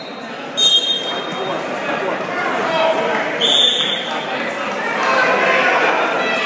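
Referee's whistle blowing two short blasts, about half a second in and again about three and a half seconds in, over spectators shouting in a gym during a wrestling bout.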